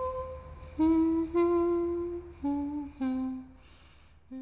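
A single voice humming a slow, wordless melody unaccompanied, in about five held notes that step lower overall and fade out near the end.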